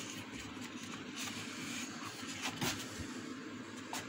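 Steady workshop background noise with a few light knocks and rubs as the wooden stretcher frame is handled on the table.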